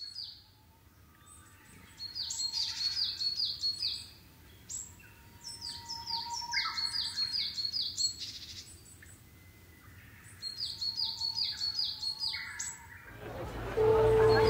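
A songbird singing in three phrases of rapid, repeated high chirps, with short pauses between the phrases.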